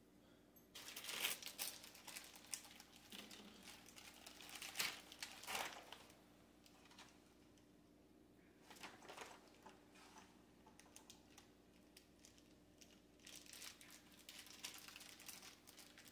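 Faint, intermittent crinkling and rustling of packaging being handled out of frame, in several short bursts separated by quiet pauses, while the hardware is sorted through.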